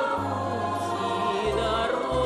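Live Russian folk-style song: voices singing together over a band, with a bass line that moves to a new note twice.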